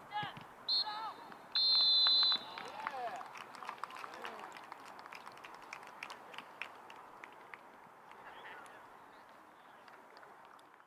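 Referee's whistle: a short blast, then a long, loud blast about a second and a half in, the final whistle ending the soccer match. Players' and spectators' voices around it, then scattered clapping that fades toward the end.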